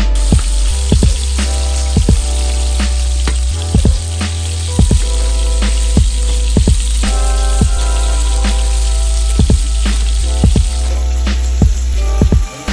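Chicken drumsticks frying in oil in a pan, a steady sizzle, under background music with a steady beat.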